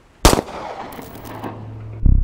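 A single sharp gunshot bang, a film sound effect, about a quarter second in. Its noisy echo dies away over about a second, while a low steady hum comes in underneath.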